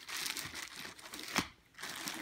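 Clear plastic garment bag crinkling as hands handle it, with a sharp crackle about one and a half seconds in.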